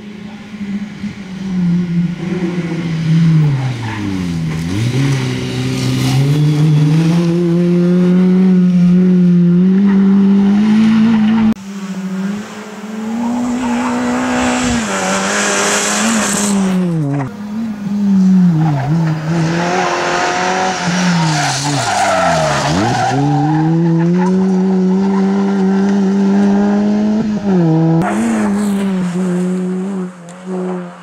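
Peugeot 206 rally car engine revving hard, its pitch dropping sharply and climbing back again and again through gear changes and lifts for corners, over several passes that change abruptly twice. About halfway through, tyres skid and scrabble on the loose gravel.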